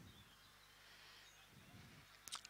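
Near silence, with only a faint steady low hum.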